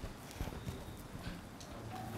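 A few light knocks and bumps as a man sits down on a chair at a desk, picked up by the desk microphone over a low hum.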